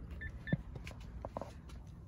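Two short, high electronic beeps about a quarter of a second apart from a car's interior warning chime, followed by a few faint clicks and knocks.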